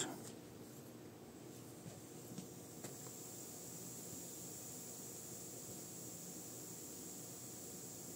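Faint, steady high-pitched hiss from the tweeter of an Edifier R2750DB active speaker turned up to maximum volume with no input connected, a little louder from about three seconds in. The owner takes the hiss for a manufacturing defect. A few faint clicks in the first three seconds.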